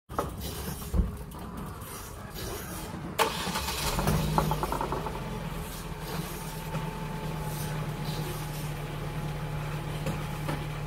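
A Ford car's engine starting about four seconds in and then idling steadily, after a low thump and a sharp click before it.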